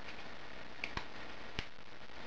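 Three small sharp clicks of a metal alligator clip being opened and snapped onto a pin of a small two-pin turn-signal flasher unit, the last and clearest about a second and a half in, over faint room noise.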